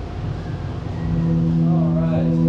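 Low rumbling noise, then about a second in a single amplified instrument note from the stage starts and holds steady.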